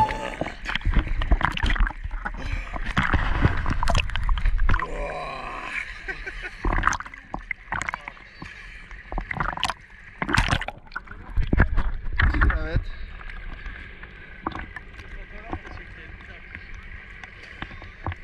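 Sea water sloshing and splashing against an action camera held at the surface by a swimmer, in irregular splashes that come thicker in the first half.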